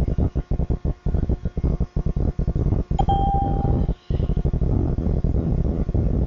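A single short electronic beep, a steady tone lasting under a second, about three seconds in. Under it runs a choppy low rumble of background noise.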